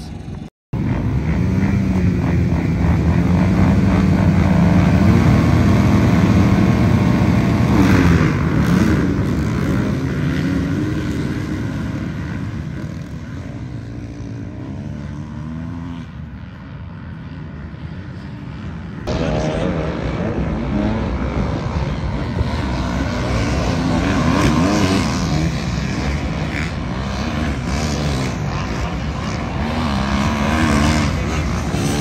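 A pack of motocross dirt bikes racing, many engines running together. For the first several seconds the drone is steady; after that the engine pitches waver up and down as riders work the throttle.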